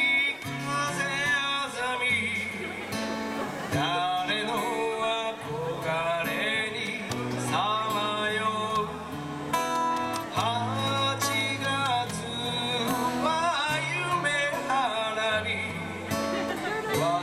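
A man singing into a handheld microphone with guitar accompaniment and a bass line underneath, amplified through PA speakers; the music runs without a break.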